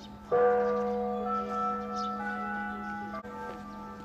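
A large bell struck once about a third of a second in, its several tones ringing on and slowly fading over a steady low hum.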